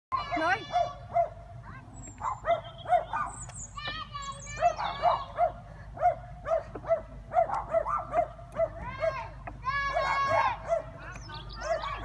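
A dog barking repeatedly in short, regular yaps, about two a second, under children's voices calling out a few times, most clearly around four and ten seconds in.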